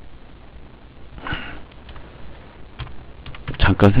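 A few clicks of computer keyboard keys as a short entry is typed, with a sniff about a second in.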